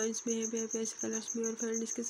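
A cricket chirping steadily in the background, a high, fast and evenly pulsed trill.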